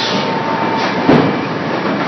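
Thermoforming production line for plastic flowerpots running: a steady mechanical noise with a single knock about a second in.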